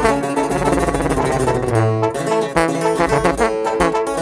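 Instrumental break in a regional Mexican corrido: the band plays on without vocals, with a steady beat.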